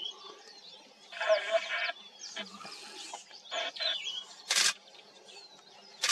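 Birds chirping and calling in open grassland: many short high chirps and sliding notes, with a louder call about a second in and a short harsh burst of sound about four and a half seconds in.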